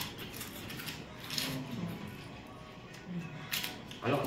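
Crisp fried wafer crackers being bitten and chewed: short crunches at the start, about a second and a half in, and again near the end.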